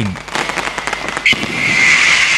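Fireworks crackling in a rapid string of small pops, then a steady high hiss that starts suddenly a little past halfway.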